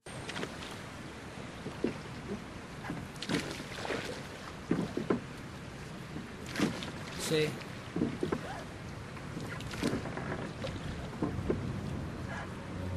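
An outdoor ambience recording: a steady wash of water and wind noise with scattered irregular knocks and a few faint voices.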